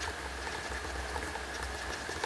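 Faint scratching of a stylus writing on a pen tablet, in short irregular strokes, over a steady low electrical hum and a thin steady tone.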